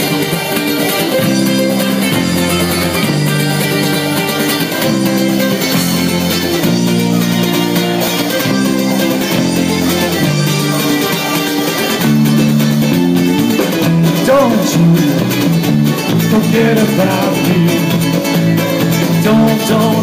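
A live ukulele band with electric guitar and drum kit playing an instrumental passage with a steady moving bass line, growing a little louder and fuller about twelve seconds in.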